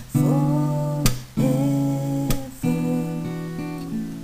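Acoustic guitar strumming slow chords, with a fresh strum roughly every second and the chords ringing on between strokes.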